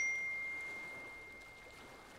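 A single phone text-message notification chime: one clear ding that starts sharply and rings on a steady high tone, fading away over about two seconds, signalling an incoming text.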